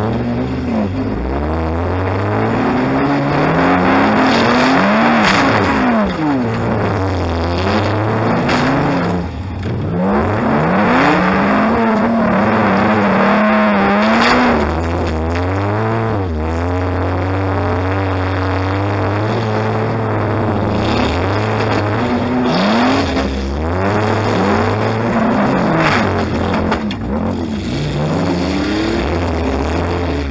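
A demolition derby car's engine, heard from inside its stripped-out cabin, revving up and falling back again and again as it is driven.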